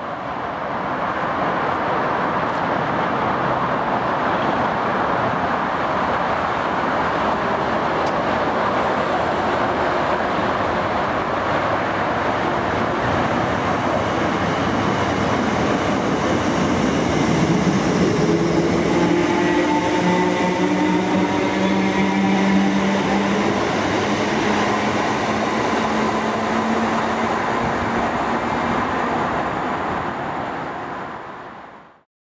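A Class 319 electric multiple unit passes close through a station, giving a loud, steady rush of wheel and rail noise. In the second half a multi-tone traction hum rises slightly in pitch as the unit goes by.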